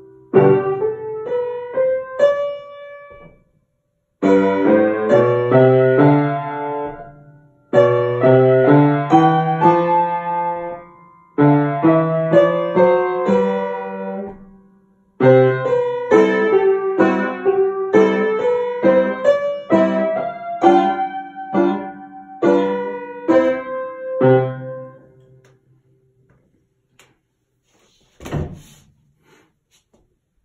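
Solo piano piece played on an upright piano, in short phrases of chords and melody with brief pauses between them. The playing stops a few seconds before the end and the last notes ring out and fade.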